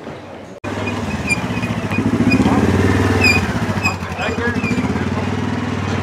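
A vehicle engine running close by with a steady low rumble that begins abruptly about half a second in and swells in the middle, with short high chirps and crowd voices over it.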